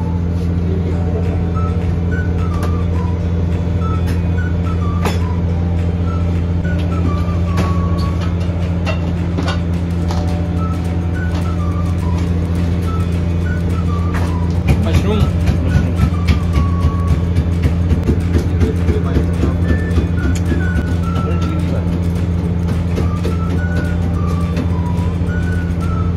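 A steady low mechanical hum with a faint simple melody over it. About two-thirds of the way through, a run of quick soft ticks rises over the hum for several seconds.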